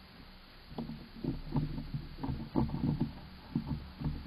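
Gray squirrel gnawing on a bone inside a wooden nest box. An irregular run of short scraping crunches starts about a second in.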